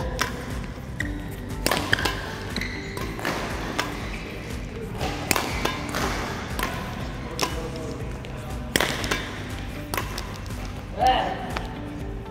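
Badminton racket strings striking shuttlecocks in a multi-shuttle drill: sharp hits, irregular, about one a second, over steady background music.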